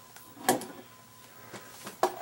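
A single short knock about half a second in as a stiff leather gun belt and holster are handled, followed by faint handling noise.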